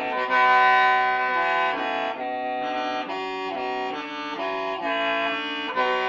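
Hmong qeej (free-reed mouth organ) being played: several reed tones sound together as a held chord, moving from note to note every half second or so, with a brief dip a little after two seconds in.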